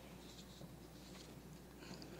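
Faint rustling of paper sheets being handled and turned at a lectern microphone, a few soft rustles over a low room hum.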